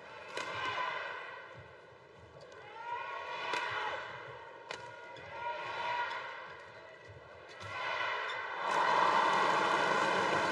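Racket strikes on a badminton shuttlecock, sharp smacks a second or so apart, over a crowd that rises and falls with the rally, then loud crowd cheering from about nine seconds in as the point ends.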